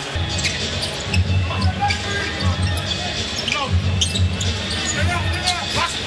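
Basketball arena game sound: a steady crowd rumble with a basketball being dribbled on the hardwood court and short sharp clicks of play.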